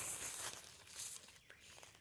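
Faint rustling and crinkling, loudest in the first half second and again briefly about a second in.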